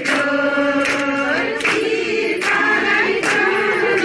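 A group of Darai women singing a traditional Sohrai dance song together, with short sharp accents about once a second.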